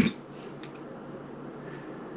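Quiet kitchen background with a few faint soft clicks in the first second, from a fork working spaghetti into a hand-held soft taco shell.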